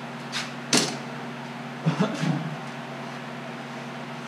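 Objects handled on a wooden workbench: one sharp clack about three quarters of a second in, then a few softer knocks around two seconds, over a steady low hum.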